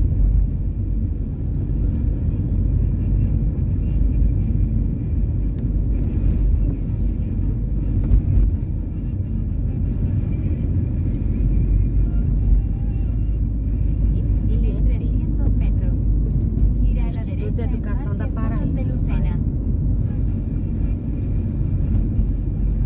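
Steady low engine and tyre rumble of a car driving slowly on city streets, heard from inside the cabin. Faint voices come in for a few seconds past the middle.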